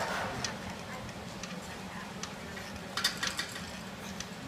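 Scattered short ticks and creaks from the still rings' straps and cables under a gymnast's weight as he lowers into a held cross, with a small cluster of them about three seconds in, over a steady low hum.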